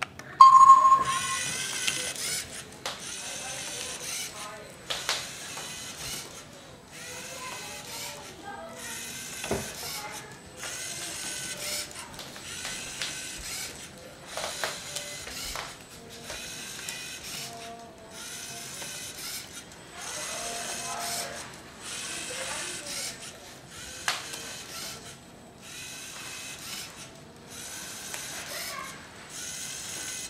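A Lego NXT robot's servo motors whirring through plastic gears in repeated bursts of about a second with short pauses between, as it ejects cards and turns to deal. A short beep from the NXT brick about half a second in.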